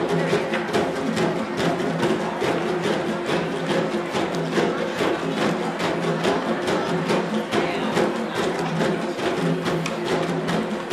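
A children's djembe ensemble playing: many sharp hand strikes and claps several times a second, over a steady low held tone.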